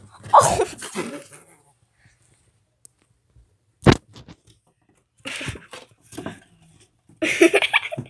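Kittens play-fighting: a string of short noisy bursts and scuffles, with a sharp knock about four seconds in and a louder burst near the end.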